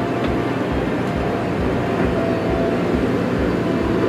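JCB backhoe loader's diesel engine running steadily as the machine works.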